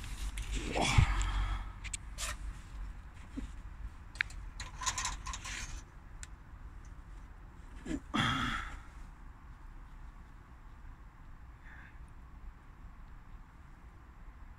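Scattered clicks, scrapes and knocks of hands working in a stopped engine bay as the oil dipstick is drawn out, with a louder scrape about eight seconds in and quieter handling after it.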